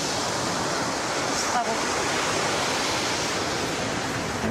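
Ocean surf, a steady wash of noise with no break.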